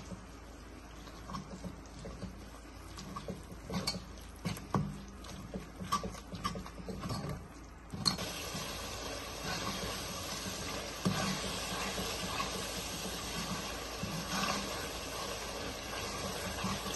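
A steel ladle scraping and clicking against a metal kadai while stirring thick onion-tomato masala with dry spices. About eight seconds in, a steady sizzle of the masala frying in oil takes over, with the ladle still scraping now and then.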